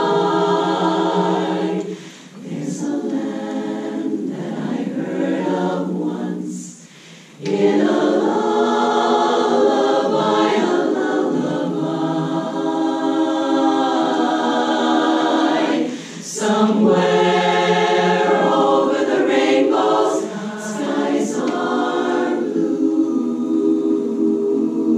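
Women's a cappella chorus singing, with short breaks between phrases about two, seven and sixteen seconds in.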